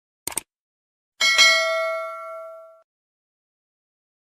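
Subscribe-animation sound effect: a quick double click, then a bell ding that rings with several clear tones for about a second and a half before cutting off abruptly.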